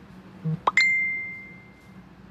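Electronic notification chime: a quick upward-sliding blip followed by a single clear, high ding that rings out and fades over about a second.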